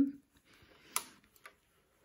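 Last of a spoken word, then mostly quiet with two short faint clicks, one about a second in and a weaker one half a second later, as fabric is handled at an overlocker before sewing.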